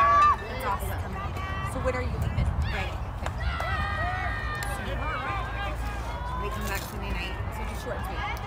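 Several high-pitched voices shouting and calling out at a distance, with a loud call right at the start, over a steady low rumble.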